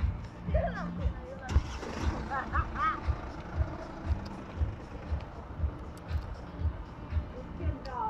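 Low thumps about two a second, the jolts of a phone carried by someone walking. A brief high warbling sound comes a couple of seconds in.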